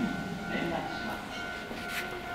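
Keihan 3000 series electric train approaching along the main line. Its running noise comes in under a steady high tone.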